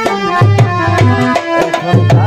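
Instrumental passage of Bengali baul folk music: a dhol drum beating a quick rhythm of deep strokes under a harmonium and a sliding melody line.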